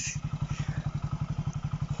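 Motorcycle engine running steadily at low revs, a low even pulse of about ten beats a second.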